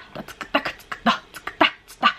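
A woman's voice tapping out a song's rhythm with quick, short percussive mouth sounds, beatbox-like, about five or six a second: a rhythm-practice exercise that counts out the beat of a fast rap-style song at low volume.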